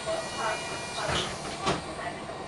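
Inside a VDL Citea articulated city bus standing at a stop with its doors open: a steady engine and ventilation hum under passengers' voices, with a couple of short knocks in the second half.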